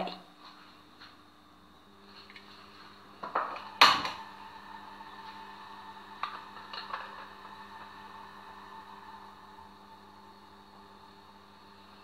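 A stainless steel pot set down on a gas hob's metal grate with a sharp clank about four seconds in, with a few lighter knocks around it. A faint steady hum starts about two seconds in and carries on to the end.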